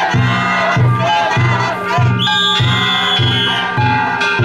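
Danjiri festival float's drum-and-gong music: a big drum beating steadily a little over twice a second with small gongs ringing, under a crowd of carriers shouting calls. A long high whistle sounds from about two seconds in until just before the end.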